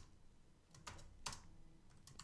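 Faint computer keyboard typing: a few soft keystrokes spread out between near-silent gaps.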